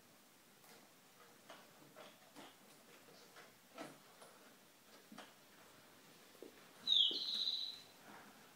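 Light taps and clicks of small hands on the plastic buttons of a baby's activity table, then about seven seconds in a loud, high-pitched tone that lasts about a second.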